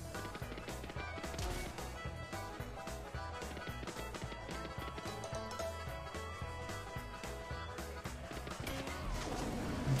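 Online video slot game's background music playing steadily, with short clicks and knocks from the reels spinning and landing during free spins.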